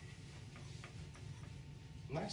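A few faint, irregular clicks over a low, steady room hum.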